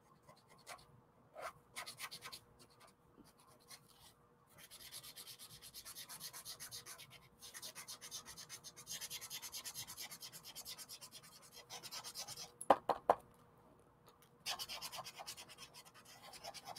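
A paint marker's felt tip rubbing on sketchbook paper in quick repeated back-and-forth strokes as an area is filled in with colour, with a few sharper, louder strokes about three-quarters of the way through.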